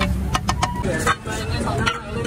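Metal spatula clinking and scraping on a flat iron griddle as haleem is spread out to fry, with a quick run of sharp clinks about half a second in, over a steady low rumble.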